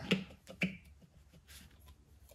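Light plastic clicks and taps as a disposable paint cup and its lid are handled and lined up with a gravity-feed spray gun's cup inlet. There are a few sharp clicks in the first second and fainter ones later.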